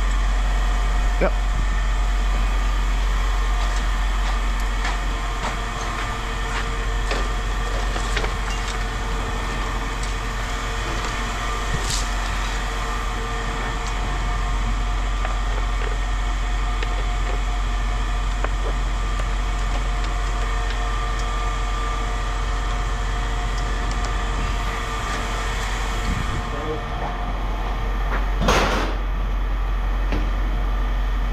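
A steady low machine hum with several constant tones, over scattered small clicks and knocks. One louder brief scrape comes about a second and a half before the end.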